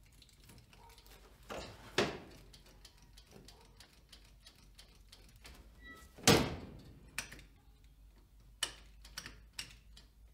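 Scattered clicks and knocks as the ignition key and controls under the dash of a 1968 Dodge D100 pickup are worked. The loudest knocks come about two seconds in and about six seconds in, with lighter clicks after. The engine does not crank, because there is no power reaching the ignition.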